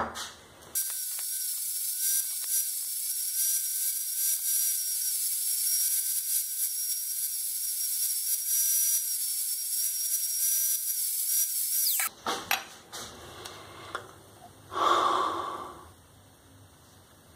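Angle grinder running with a steady high whine while grinding the end of a steel tube to a curved template. About 12 seconds in it is switched off and its pitch falls as the disc spins down. A few clicks and a short clatter follow near the end.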